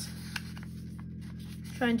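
A folded sheet of paper being slid into line and pressed flat by hand on a tabletop: soft rustling with a small click, over a steady low hum.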